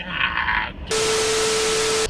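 Loud static hiss with a steady hum-like tone under it, starting abruptly about halfway in and cutting off sharply: an edited-in static transition effect. Before it, a brief muffled sound.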